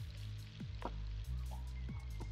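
The horror anime's soundtrack playing back: a low, steady droning score with faint crackling hiss and several short falling tones.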